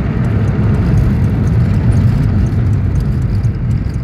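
Steady, loud low rumble of a bus engine and tyre noise, heard from inside the moving bus.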